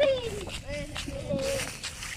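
Indistinct high-pitched voices, calling and talking, with no clear words; one voice slides down in pitch at the start.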